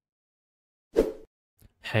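A single short pop sound effect about a second in, after a second of silence, accompanying an animated channel logo.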